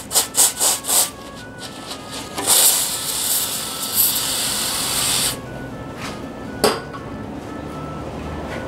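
Aerosol spray can spraying through a straw nozzle onto a rusted bolt: a few short hissing bursts, then one steady spray of about three seconds. A single sharp click follows later.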